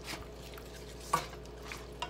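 Two wooden spatulas stirring and turning raw chicken pieces in a soy sauce and vinegar marinade in a frying pan. A few short knocks of wood against the pan, the loudest about a second in.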